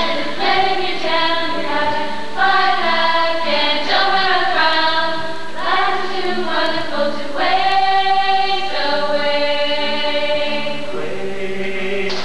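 A group of voices singing together, moving through a melody with several long held notes.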